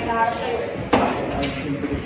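Boxing gloves landing a punch: one sharp smack about a second in, over the voices of people shouting around the ring.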